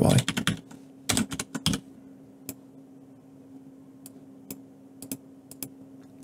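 Computer keyboard typing: a quick run of keystrokes in the first two seconds, then a few single clicks spaced out.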